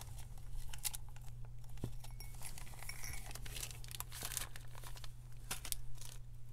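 Small clear plastic packet of jewellery eye pins crinkling as it is handled, in irregular short crackles.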